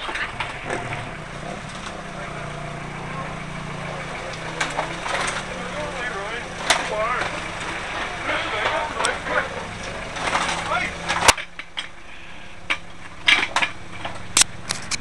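Indistinct voices and handling knocks over a steady low hum. The hum stops with a sharp click about eleven seconds in, and a few more knocks follow near the end.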